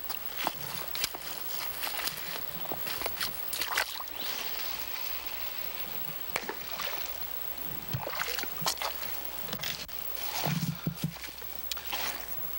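Shallow river water sloshing and lapping around a wading angler's legs as he shifts and handles his rod after a cast, with scattered light clicks and knocks.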